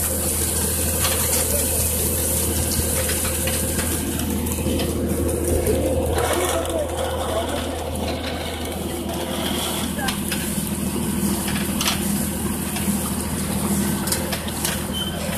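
Tractor engine running at a steady drone as it pulls a drip-tape laying rig, with short clicks and rattles from the rig over it.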